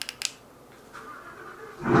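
A few key-fob button clicks, a faint whir about a second later, then near the end the supercharged 5.0 V8 of a Ford F-150 with a Borla Atak exhaust fires in a sudden, loud cold start, heard through the walls from inside the house.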